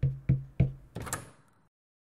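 Knocking on a wooden door: three quick knocks about a third of a second apart, each with a short low ring, then a lighter, sharper knock about a second in.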